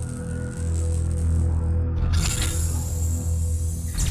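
Electronic background music with a steady low bass and a held tone. About halfway through, a hissing swoosh sound effect comes in over it.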